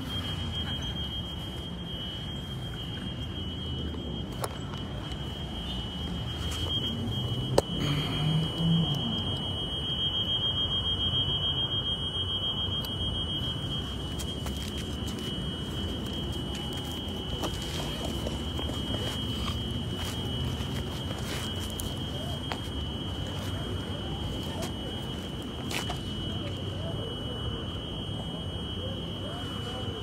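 A continuous high-pitched electronic alarm tone with a slight regular pulse, over outdoor street noise. There is a single sharp crack about eight seconds in.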